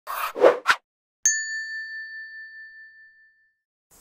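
Three short noisy rushes, then about a second in a single bright ding that rings and fades away over about two seconds.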